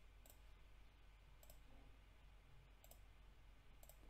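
Near silence with a few faint, sharp computer mouse clicks spread across it, about four in all.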